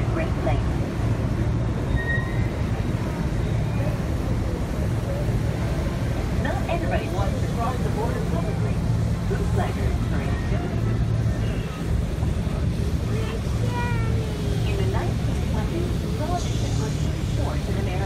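Tour boat's engine running steadily, a low drone, with passengers' voices faint over it.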